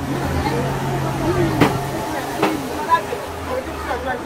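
Voices of people talking in a busy market lane, not close to the microphone, over a steady low hum, with two sharp clicks in the middle.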